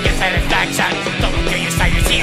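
Thrash metal played by a full band without vocals: distorted electric guitars over bass and a steady drum beat.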